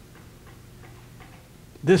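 Quiet room tone with a low steady hum and faint light ticks, a few to the second; a man's voice starts speaking near the end.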